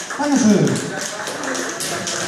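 A man's voice sliding down in pitch about half a second in, over a run of light taps and knocks.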